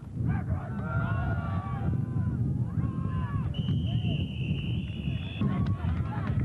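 Several voices shouting over a steady low rumble, then one steady high-pitched referee's whistle blast lasting nearly two seconds, starting a little past halfway.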